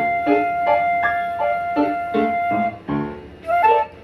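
Concert flute playing over piano accompaniment. The flute holds one long note for about two and a half seconds, then plays a quick rising run of short notes near the end, while the piano plays chords struck in a steady pulse underneath.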